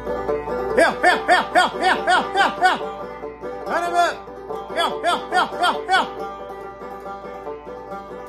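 A man's coon-hound call: quick rising-and-falling whoops, about four a second, in two runs, with banjo ringing underneath.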